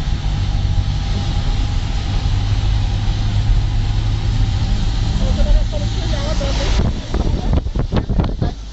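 A car's engine and tyre rumble, heard from inside the vehicle as it drives a mountain road. About a second before the end the steady rumble gives way to uneven wind buffeting on the microphone.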